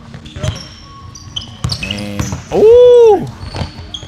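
Basketball bounces and short sneaker squeaks on a hardwood gym floor. A little before three seconds in comes one loud, drawn-out shout of about half a second that rises and falls in pitch.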